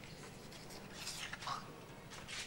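Faint whispering, with a few short breathy hisses about a second in.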